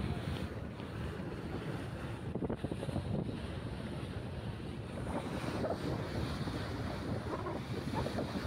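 Wind buffeting the microphone over the steady rush of water churning along the hull of a moving river passenger launch.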